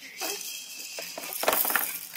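Plastic toys on a baby's activity-centre tray rattling and clicking as the baby grabs and shakes them, with a rustling clatter that builds to its loudest about one and a half seconds in.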